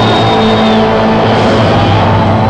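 Loud electronic music over a club sound system: layered sustained synthesizer tones, with a high synth tone that slides up, holds and slides back down in the first second.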